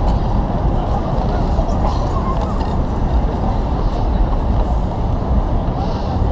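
Busy city street noise: traffic and crowd voices blended into a steady, muffled low rumble, picked up by a GoPro camera on a moving bicycle.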